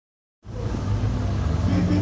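A steady low hum of a running motor, starting about half a second in, over general street noise.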